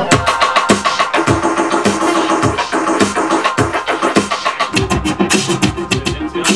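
Electronic music cuts in abruptly: a steady kick-drum beat with fast clicking percussion under sustained synthesizer tones.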